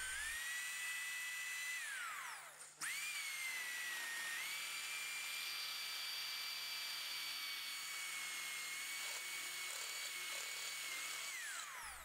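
Electric drill running a one-inch hole saw through the aluminum tail housing of a ZF5 transmission: a steady motor whine that winds down and stops about two seconds in, starts again straight away and runs on evenly before winding down near the end.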